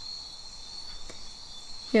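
Background noise between spoken phrases: a steady high-pitched whine over faint hiss, with a faint click about a second in.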